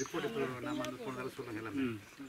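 A man's voice talking in short phrases, with nothing else clearly heard.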